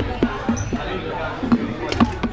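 Several press camera shutters clicking at irregular intervals, about five sharp clicks over the chatter of a crowd.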